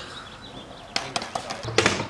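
A faint hiss, then from about a second in a quick run of sharp clicks and knocks, with a man's voice starting near the end.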